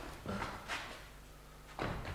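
A few faint knocks and rustles from people moving about on a stage, over a low steady hum.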